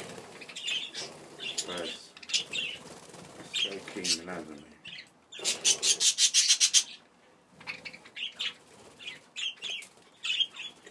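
Budgerigars chirping in short high calls, with a loud run of rapid wingbeats from a budgie flapping close by, from about halfway through for a second and a half.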